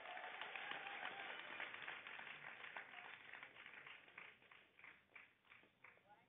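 Faint applause dying away, thinning to a few scattered claps before it stops near the end.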